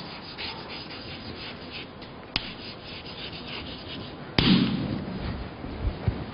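Writing on a lecture-hall board: a run of short scratching strokes, then a sharp click a little over two seconds in and a louder knock about four and a half seconds in.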